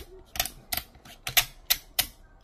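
Ratcheted plastic joint of a 1:18 scale action figure clicking as it is moved step by step: about six sharp clicks, unevenly spaced.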